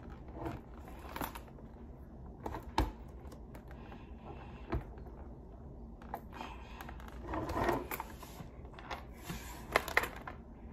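Scattered clicks and knocks of hard plastic as a visor clip is worked onto the faceguard of a Schutt football helmet, with a longer scraping rub a little after seven seconds.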